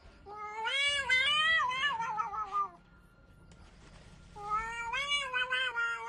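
A domestic cat yowling: two long, wavering, drawn-out calls with a short pause between them.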